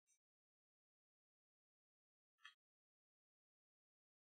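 Near silence, broken by two faint, brief clicks: one at the very start and one about two and a half seconds in.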